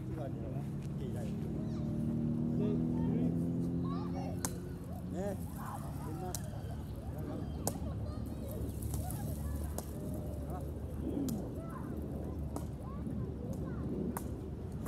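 Several sharp knocks of a woven rattan cane ball being kicked, spaced a second or more apart, with faint voices in the background. During the first five seconds a vehicle's low steady hum, slowly falling in pitch, is the loudest sound.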